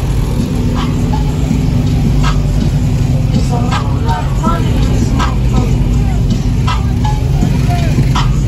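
Rap music with heavy bass and a slow beat, a sharp snare hit about every second and a half, with vocals over it and cars driving past underneath.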